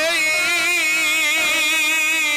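A male folk singer holding one long sung note with a wide, even vibrato, over string accompaniment.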